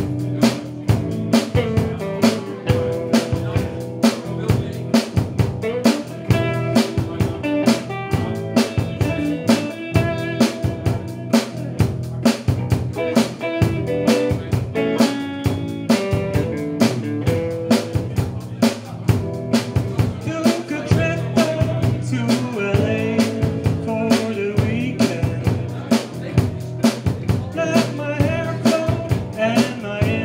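Live rock band playing: electric guitars over a drum kit keeping a steady beat of kick and snare hits.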